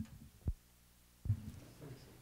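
A faint click, then two short, low thumps, the second and louder one just over a second in. They sound like knocks or handling bumps on a microphone.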